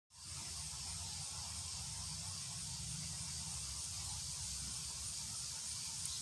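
Outdoor ambience: a steady high hiss over a low, unsteady rumble, with no distinct events.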